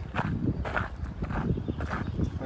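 Footsteps on a gravel path, about two steps a second.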